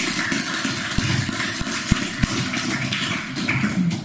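Audience applauding: many hands clapping in an even patter.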